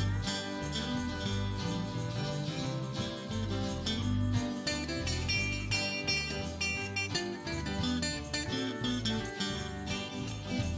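Country gospel band playing an instrumental passage, no singing, with a Telecaster-style electric guitar playing a lead line over bass, keyboard and acoustic guitar.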